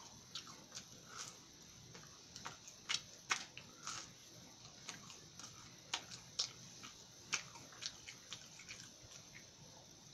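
A person chewing a mouthful of crunchy, flaky Pillsbury Toaster Strudel pastry with cream cheese and strawberry filling: faint, irregular crunches and wet mouth clicks.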